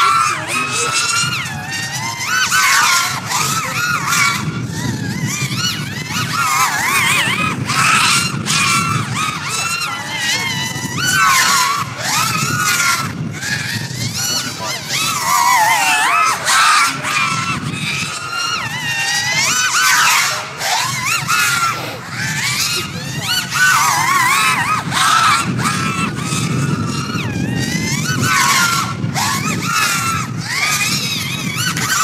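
Racing quadcopter on 6S batteries, its four brushless motors whining as it flies a fast lap, the pitch sweeping up and down quickly and constantly with throttle changes and passes.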